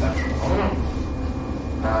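Steady low hum of room noise throughout, with a faint voice sound early on and a man's hesitant "uh" starting near the end.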